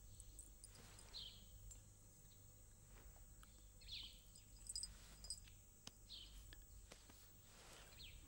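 Near silence: faint background ambience with a few soft, short high chirps about two to three seconds apart.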